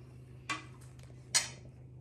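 Two short clicks of a metal spoon as a spoonful of food is tasted, the second louder, over a faint steady low hum.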